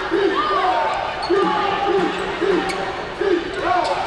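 A basketball being dribbled on a hardwood court, about two bounces a second, with a few short high squeaks and arena voices over it.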